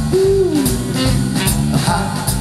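Blues band playing live with a steady beat and saxophone, a held note bending down early on, and the singer shouting "ha" near the end.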